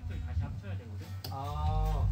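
Indistinct talking in a rehearsal room over a steady low hum and low notes from the band's amplified instruments, the low sound growing louder near the end.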